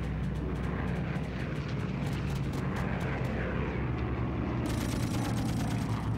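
Piston-engined propeller aircraft droning steadily overhead, with a low even engine hum and faint crackle on top.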